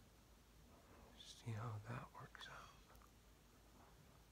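A man's brief half-whispered mutter, about a second and a half in, with otherwise near silence.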